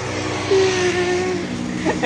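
A man's drawn-out mock wail, one long, slightly falling cry in the middle, over a steady low engine-like hum.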